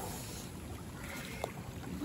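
Wind rumbling on the microphone over moving sea water, with a brief faint high note and a single click about a second and a half in.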